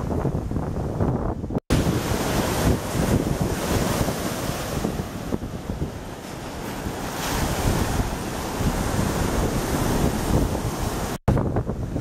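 Lake Michigan surf breaking and washing up onto the sandy shore, a steady rushing wash, with wind buffeting the microphone. The sound drops out for an instant twice, about a second and a half in and near the end.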